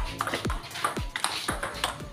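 Table tennis ball clicking off paddles and the table in a fast rally, several hits in quick succession, over background music with a steady beat.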